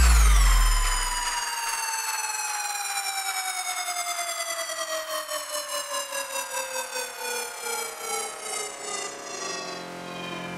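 Electronic DJ-mix transition effect: the beat and bass cut out within the first second. A synth tone rich in overtones then drops quickly and glides slowly downward in pitch, pulsing in a wobble that grows slower as it falls.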